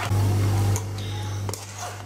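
Metal spoon scraping and pressing wet strawberry purée through a wire-mesh sieve, with a few short clicks of spoon against the metal rim, over a steady low hum that is louder for the first half-second or so.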